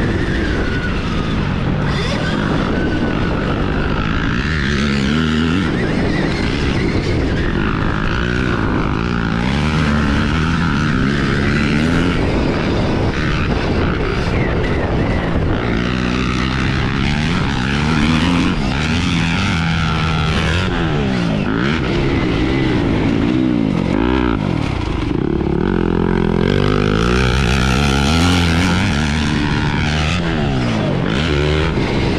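Stark Varg electric motocross bike being ridden on a dirt track: a high motor whine that rises and falls with the throttle, under wind and drivetrain noise. In the second half another dirt bike's engine, close ahead, revs up and down again and again.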